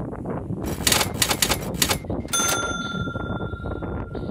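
Cash-register sound effect: a quick run of clattering mechanical clicks, then a single bright bell ding that rings on and fades.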